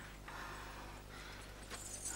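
Faint footsteps, two light knocks, over quiet room tone.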